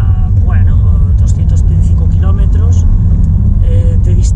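Steady low rumble of a car's engine and tyres heard from inside the cabin while driving, with a few brief snatches of the driver's voice.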